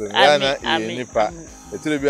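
Crickets chirping steadily in the background behind close, ongoing talk.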